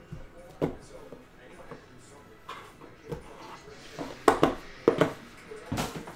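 Hands handling a cardboard trading-card box and a stack of cards on a table: several short, sharp taps and knocks, the loudest a pair about four and five seconds in.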